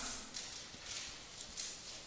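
Faint, irregular light taps and scratches of a stylus writing by hand on a tablet screen.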